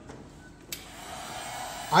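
Handheld heat gun switched on with a click about two-thirds of a second in, then its fan blowing steadily, growing louder as it comes up to speed.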